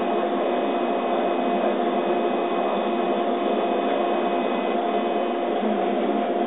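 Laser cutter at work cutting holes in thin wood: a steady hum and hiss of its machinery, with a few held tones, as the cutting head moves over the sheet.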